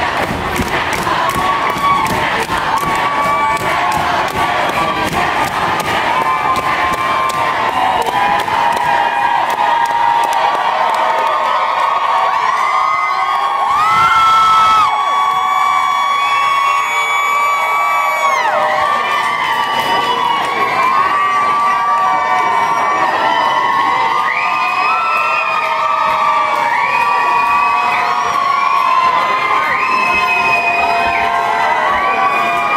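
Concert crowd cheering and screaming for an encore, with many long, high-pitched screams held over the din. It swells briefly near the middle.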